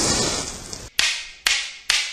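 Outro sting sound effect: a loud crash fading away, then three sharp cracks about half a second apart, each ringing out briefly.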